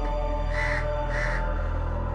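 Two short bird calls about half a second apart, over steady background music with a held low drone.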